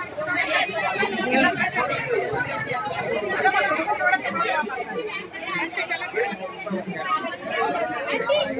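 People talking, several voices overlapping in chatter.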